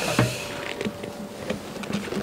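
Honeybees buzzing around an opened hive, with one steady note held for about a second, and a few light clicks.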